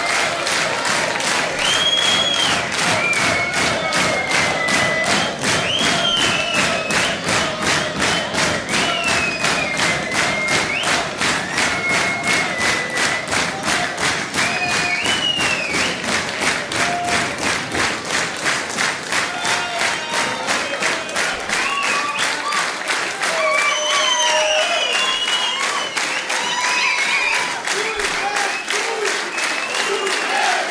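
Theatre audience clapping in unison to a steady beat, with whistles and shouts over it: a rhythmic ovation at the end of the set.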